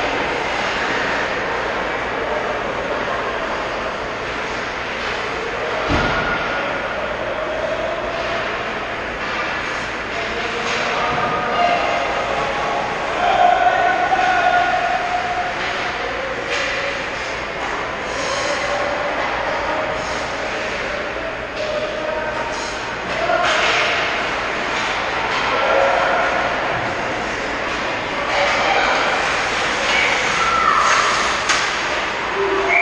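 Echoing ice-rink sound during a youth hockey game: a steady hum from the arena, with scattered shouts from players and spectators and the clicks and scrapes of sticks, skates and puck on the ice. A single sharp bang comes about six seconds in.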